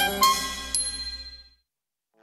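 The closing note of a jingle: a bright chime struck just after the start, ringing and dying away, then silence for about the last half second.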